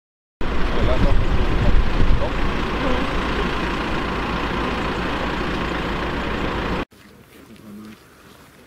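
Armoured vehicle's diesel engine running steadily close by, uneven in the first couple of seconds. It cuts off abruptly about a second before the end, leaving much quieter outdoor sound.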